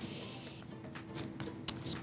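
A large metal spoon scraping and clicking against a stainless steel bowl while stirring a dry granola mixture, with a few sharp scrapes in the second second. Soft background music plays underneath.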